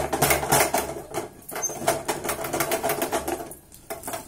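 Wooden spatula stirring and pressing thick ragi kali dough hard in a metal pot, a rapid run of knocks and scrapes against the pot's sides that eases off near the end. This is the strong mixing stage that works the cooked finger-millet flour into a smooth dough.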